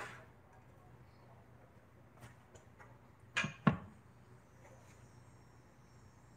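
Two short, sharp knocks about a third of a second apart, about three and a half seconds in, over a low steady hum.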